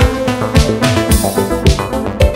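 Electronic music: synthesizer note lines over a drum-machine beat, with the kick drum landing about twice a second.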